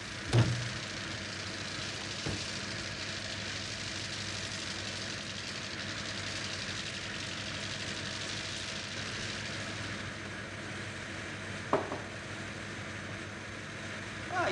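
Car engine idling steadily under an open hood while its idle is adjusted at the carburettor with a screwdriver, behind a steady hiss. A sharp knock sounds just after the start and another near the end.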